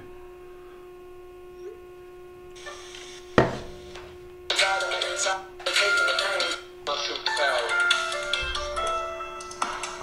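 A song played through a mobile phone's small speaker held up to the microphone: a voice singing over instruments, starting about four and a half seconds in. Before it there is a steady hum and a single knock.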